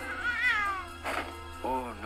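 Two drawn-out, cat-like cries over background music: a high wavering one in the first second, then a lower arching one near the end.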